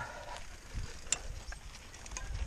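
Mountain bike rolling down a dirt track: a low rumble from the tyres under scattered ticks and rattles from the bike, with one sharper click about a second in.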